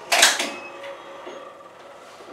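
Permobil F5 VS power wheelchair's electric tilt actuator running with a faint steady hum as the seat tilts back, with a short loud burst of noise about a quarter second in.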